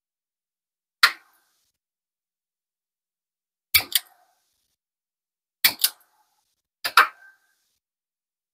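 Small wire cutters snipping thin wire: a sharp click about a second in, then three quick pairs of clicks.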